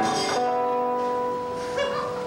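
Acoustic guitar plucked once and left to ring on a single sustained note, then plucked again near the end, as when a guitar is being tuned.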